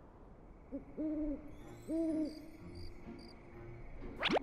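Owl hooting: a short lead-in note, then two steady hoots about a second apart, with a few faint high chirps behind them.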